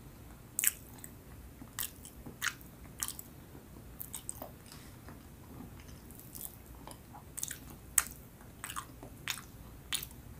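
Close-miked chewing of soft, sticky Filipino rice and cassava cakes: a dozen or so short, irregular wet mouth clicks and smacks, the sharpest about eight seconds in.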